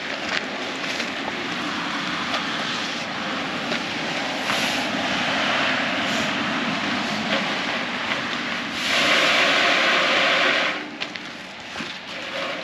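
A live Christmas tree being pulled through a metal netting funnel: the branches and needles rustle and scrape against the metal as the net closes around the tree. The sound is loudest for about two seconds near the end.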